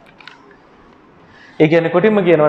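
Quiet room with a few faint clicks and rustles of paper sheets being handled, then a man's voice starts speaking about one and a half seconds in.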